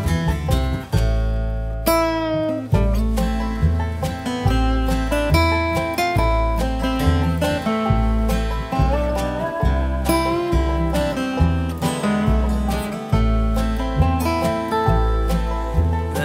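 Bluegrass band playing an instrumental break: a dobro takes the lead over acoustic guitar and upright bass, with bass notes plucked at a steady pace.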